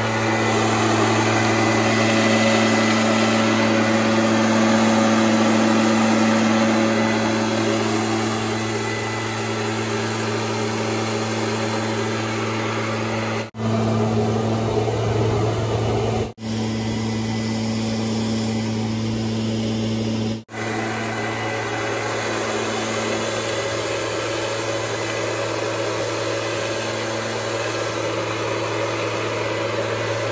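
Gas-powered backpack leaf blower running steadily at working throttle, its engine drone mixed with air rushing from the blower tube. It is a little louder over the first several seconds, and the sound drops out briefly three times.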